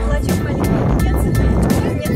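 Loud wind buffeting the microphone, a heavy low rumble, over background music with a steady beat.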